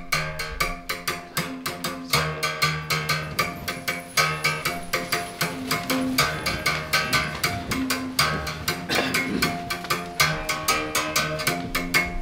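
Xhosa uhadi, a single-string musical bow with a calabash resonator, struck rapidly with a stick in a steady rhythm. The low root alternates between two notes every second or two, with overtones ringing above it.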